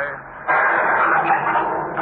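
Radio-drama storm-at-sea sound effect: a loud surge of wind and crashing water starts about half a second in and keeps going.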